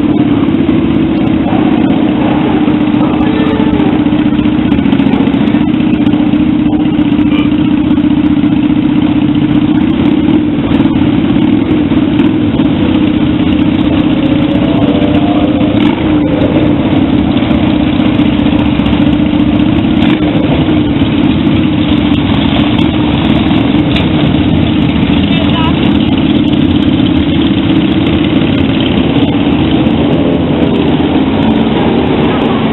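Motorcycle engines running steadily, with voices underneath.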